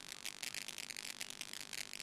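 Faint, rapid, irregular clicking and crackle with no voice: a video-call audio feed breaking up during a connection problem.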